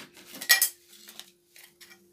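Brief handling noises as a plastic packet and small parts are picked up by hand, a few short clinks and rustles with the loudest about half a second in. A faint steady hum sits underneath.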